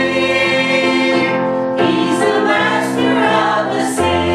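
Small mixed vocal group of three women and a man singing a gospel song in harmony on long held notes, accompanied by electric piano, moving to a new chord about halfway through.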